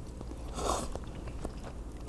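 Quiet sounds of someone eating jjapaguri noodles from a paper cup: soft chewing with a few small clicks.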